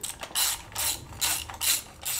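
Hand ratchet clicking in about five quick back-and-forth strokes, roughly two a second, as bolts are run in only lightly on a BMW V8 engine.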